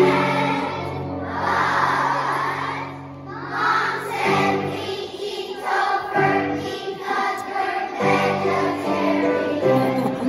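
Children's choir singing together over an instrumental accompaniment.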